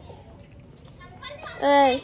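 Speech: a short lull with faint background noise, then a voice speaking loudly near the end.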